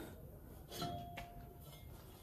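Quiet workshop background with a faint light clink about a second in, followed by a short thin ringing tone.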